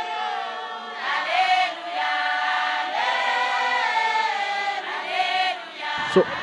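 A Johane Masowe eChishanu congregation singing a hymn together unaccompanied, with many voices and no instruments. The voices hold long, sliding notes in a few phrases, with brief breaths between them.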